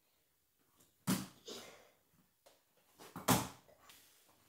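A child's bare feet landing with two loud thumps, about two seconds apart, with a few lighter knocks of footsteps between.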